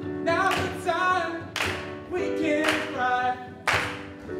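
A group of voices singing a gospel-style song together, with several sharp claps cutting through the singing.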